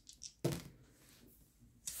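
A pair of dice tossed onto a paper game sheet on a tabletop: a short clatter about half a second in as they land and tumble to rest.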